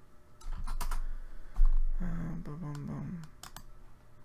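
Computer keyboard keys clicking in short runs, with a low thump about one and a half seconds in and a brief low hum just after.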